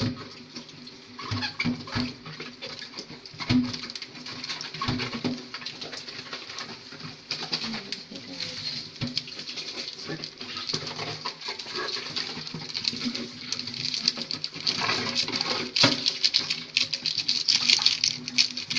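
A spatula stirring a pot of simmering sinigang broth, clinking and scraping against the aluminium pot, as sinigang mix is stirred in. The small clicks run irregularly and grow thicker in the last few seconds.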